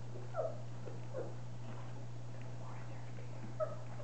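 Four-week-old puppies giving a few short, high squeaks and whimpers while feeding from a bowl, over a steady low hum.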